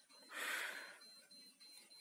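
A single short, quiet breath from the narrator between sentences, lasting under a second.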